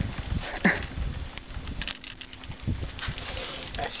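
A largemouth bass being lipped and lifted out of the water into a small boat: splashing and a few short knocks against the boat, over a steady low rumble.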